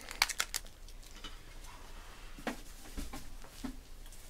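A few light clicks and taps of small handling noise, with a soft thump about three seconds in.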